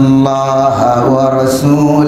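A male preacher's voice chanting the sermon in a sung, melodic tone, holding long notes and sliding between pitches.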